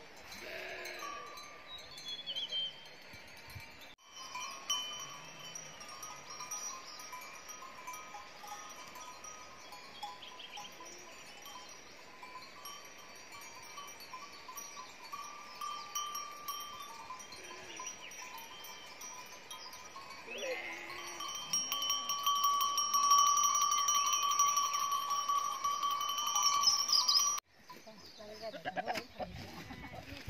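A flock of sheep on open pasture, with bells ringing steadily among them and a few short bleats. The ringing swells louder about two-thirds of the way through, then cuts off suddenly near the end.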